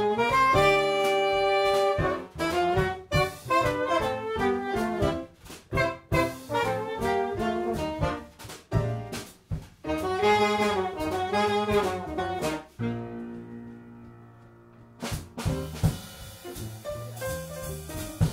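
Live jazz quintet: alto saxophone and trombone playing a theme together over piano, upright bass and drum kit. About thirteen seconds in the band holds a long chord that fades, then a sharp drum hit and the drums carry on.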